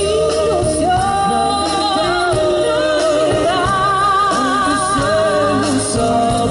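A live band with singers performing a song through a PA system, the voices holding long notes with vibrato over a steady accompaniment.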